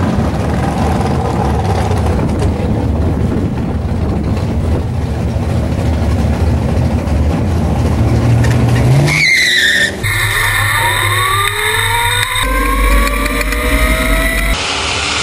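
Drag-racing vehicles rumbling steadily at the starting line, then revving up about nine seconds in. After that a vehicle accelerates hard, its engine pitch climbing steeply, with a change partway through as it picks up speed again.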